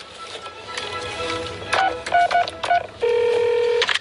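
Telephone touch-tone dialing: a quick run of about five short keypad beeps, then the line trilling with a ringing tone for almost a second as the three-way call connects.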